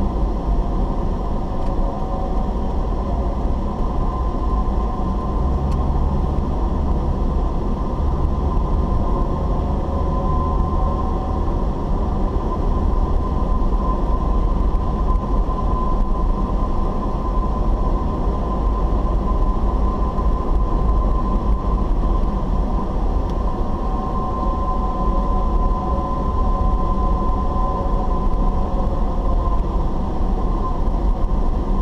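Steady in-cabin driving noise of a car at road speed: low engine and tyre rumble with a thin, steady whine on top that swells twice.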